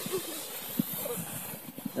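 Plastic saucer sled sliding over snow: a steady scraping hiss, with a few faint ticks.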